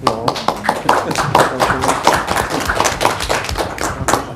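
Applause: many people clapping, starting suddenly.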